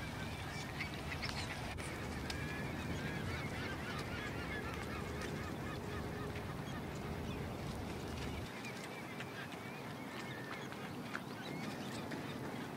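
A flock of waterbirds calling, with many short calls overlapping into a steady chorus. A low background rumble underneath stops abruptly about eight and a half seconds in.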